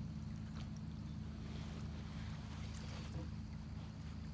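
Small lake ripples lapping softly at a sandy shore, with faint little ticks of water, over a steady low hum.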